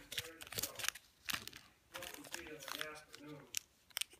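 Plastic packaging crinkling and crackling in the hands, a small zip-lock bag and wipe sachets being picked up and handled, in a run of short sharp crackles, with some speech in the background.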